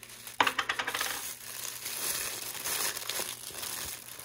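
Plastic toy packaging being opened: a sharp click about half a second in, then steady rustling and crinkling of thin plastic wrapping as the wrapped accessories are pulled out of a small plastic capsule.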